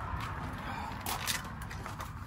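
A man drinking milk from a plastic cup: a few faint swallowing clicks over low background noise.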